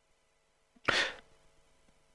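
A single short, sharp burst of breath noise from a person at the microphone, about a second in, lasting under half a second.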